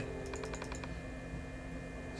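Computer keyboard keystrokes: a quick run of several light key clicks about half a second in, over a steady faint electrical hum.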